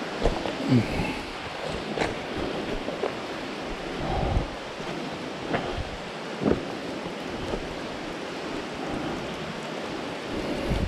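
Footsteps on loose cave rocks, giving about half a dozen uneven knocks and crunches, over a steady rush of water flowing under the rocks.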